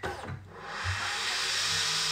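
A kitchen appliance switching on about half a second in and running with a steady hiss.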